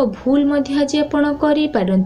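A woman's voice speaking without pause: narration.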